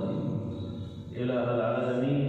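A man's voice chanting in long, held melodic tones, with a short dip about a second in before the chant goes on.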